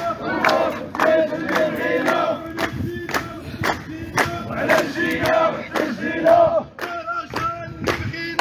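A crowd of protesters chanting a slogan together in Moroccan Arabic, with rhythmic hand clapping about two claps a second.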